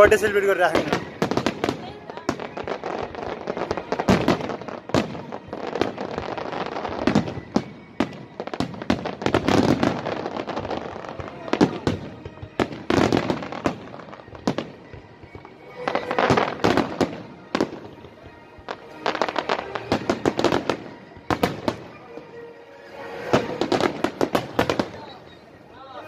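Fireworks display: aerial shells bursting in sharp bangs and crackles, coming in dense volleys every few seconds.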